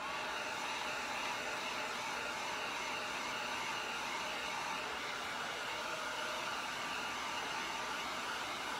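Handheld heat gun blowing steadily, a hiss with a faint whine in it, as it is swept over wet epoxy to pop bubbles.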